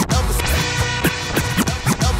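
Hip hop beat with DJ turntable scratching: short record scratches sweeping up and down in pitch over a steady drum beat.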